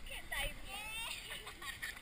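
Young women's voices with short bits of laughter, close to the camera.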